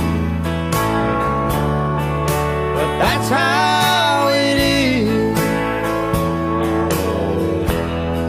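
Country band recording in an instrumental break: steady drums and bass under a lead line that slides and bends between notes, in the manner of a steel guitar.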